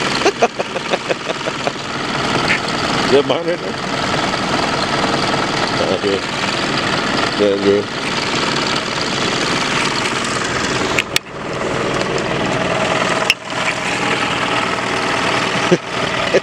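Toyota Camry engine idling steadily with the hood open.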